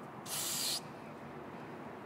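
A short burst of aerosol carburetor cleaner sprayed onto a small brass carburetor jet part, a hiss lasting about half a second, shortly after the start.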